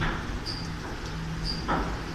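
Ceccato Antares rollover car wash running: a steady motor hum, the spinning side brushes swishing across the car at the start and again near the end, and a short high chirp about once a second.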